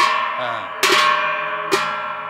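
A pair of hand cymbals clashed together twice, about a second apart, each clash ringing on and dying away slowly over the ringing of a clash just before.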